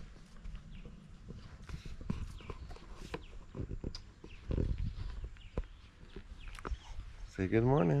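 Quiet outdoor background with scattered light knocks and rustles of a handheld camera being carried about. A voice says "Hi" near the end.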